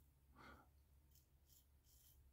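Near silence, with one faint short breath about half a second in.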